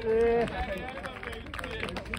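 A voice calling out one short held vowel at the start, followed by faint scattered talk from people nearby.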